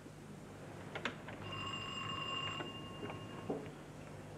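A doorbell rings once, a steady electric ring lasting just over a second, with a couple of knocks just before it.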